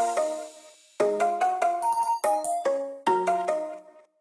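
Background music: the beat and bass drop out and the sound fades, then about a second in a bell-like melody of separate ringing notes plays with no bass, pausing briefly near the end.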